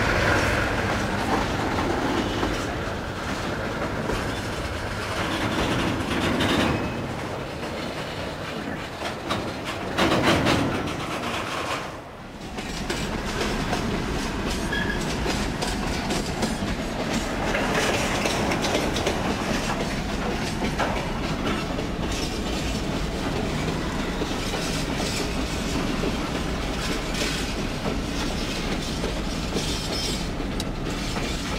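Freight train rolling past close by, its wagons' wheels clacking over the rail joints in a steady clickety-clack. The sound dips briefly about twelve seconds in, then carries on.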